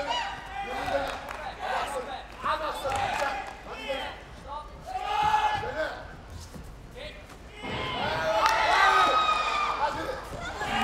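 Voices shouting and yelling in an indoor arena through the last seconds of a taekwondo bout, with no clear words. The shouting swells to its loudest burst about eight seconds in.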